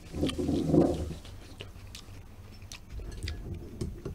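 People eating at a table close to the microphones: chewing and mouth sounds, with light clicks of chopsticks and tableware scattered through. A short low vocal sound in the first second is the loudest moment.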